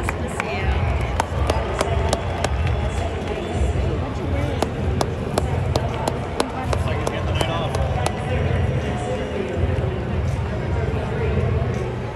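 Stadium public-address announcer's voice echoing through the ballpark as he reads out the visiting lineup, over crowd chatter, with scattered sharp clicks throughout.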